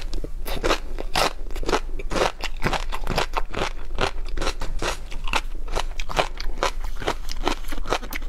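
Close-miked crunchy chewing of a mouthful of tobiko (flying fish roe) with a crisp vegetable piece: a rapid, uneven run of wet crunches, several a second, throughout.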